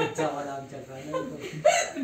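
A woman laughing amid a few voices talking, with a short, loud burst about three-quarters of the way through.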